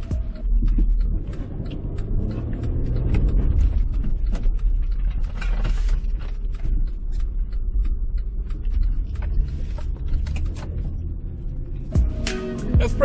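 Acura MDX on Nitto Terra Grappler all-terrain tyres driving through snow, heard from inside the cabin: a steady low rumble from the tyres and road with scattered creaks and crunches. Music plays underneath.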